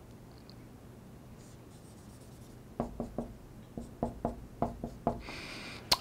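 Dry-erase marker writing on a whiteboard: after a quiet start, a quick run of short taps and strokes begins about three seconds in, ending in one longer rubbing stroke.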